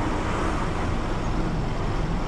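Steady engine rumble and road noise inside a moving vehicle's cabin.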